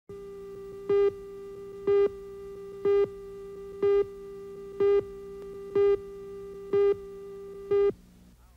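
Videotape countdown leader: a steady electronic tone with a louder beep at the same pitch once a second, eight beeps in all, counting down to the start of the commercial.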